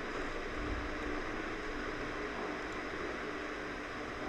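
Steady background hiss and room noise from the recording microphone, with no distinct events.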